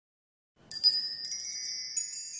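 A short, high-pitched tinkling chime sting for a logo ident, starting just under a second in with several bright strikes that ring on.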